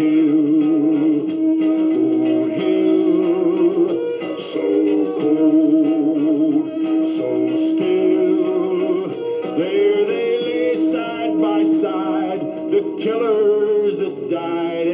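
Vintage 1964 National RQ-705 valve reel-to-reel tape recorder playing back a recorded song. This is a passage without sung words, with sustained wavering notes.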